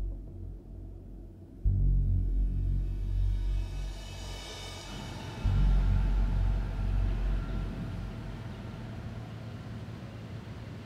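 Suspense film score: two sudden deep bass booms, about two seconds in and again about five and a half seconds in, each ringing on and fading, with a high shimmering swell rising between them.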